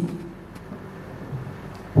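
A pause in a man's speech over a microphone, leaving a low, steady room hum. The tail of a word is heard at the start, and a brief faint murmur comes about one and a half seconds in.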